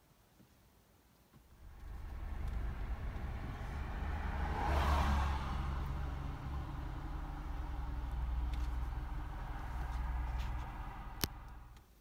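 A motor vehicle's engine running close by. It sets in about a second and a half in, swells with a rush of tyre-like noise around five seconds in, and cuts off sharply just before the end. There is a single sharp click shortly before the end.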